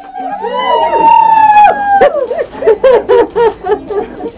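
Celebratory ululation at a book unveiling: one long high held cry, then a quick warbling trill of about four to five pulses a second.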